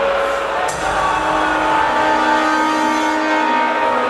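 Loud live symphonic black metal from the stage, distorted in the recording, with long held chord notes ringing over the band.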